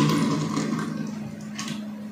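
Small toy VW bus rolled by hand across a tabletop, its wheels running and scraping on the surface, over a low steady hum.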